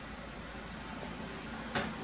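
Steady low hum and hiss of a running PC's cooling fans while the BIOS flash is in progress, with one short click near the end.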